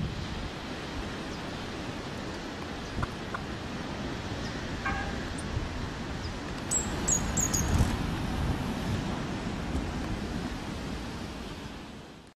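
Outdoor ambience with a steady wind rush on the microphone, and a few brief high bird chirps about seven seconds in.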